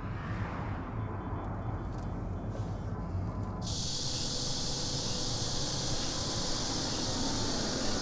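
Low, steady rumble of a car driving, heard from inside the cabin. About three and a half seconds in, a steady high hiss of outdoor ambience suddenly joins it as the car is heard from outside.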